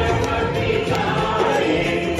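Many voices singing a Hindu devotional aarti together, with hands clapping along.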